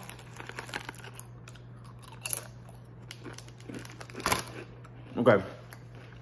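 Doritos tortilla chips being chewed, a string of crisp crunches with the loudest about four seconds in, and a crinkle of the foil chip bag, over a steady low hum.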